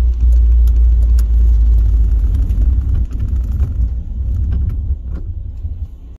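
Low road rumble of a car driving on a wet road, heard from inside the cabin, easing off near the end as the car slows, with scattered faint ticks.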